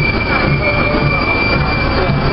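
Heavy lorry carrying a parade float, its engine running close by at walking pace, with a steady high-pitched squeal held over the noise.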